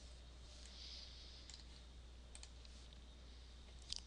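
A few faint computer mouse clicks, a little stronger near the end, over near-silent room tone with a low, steady hum.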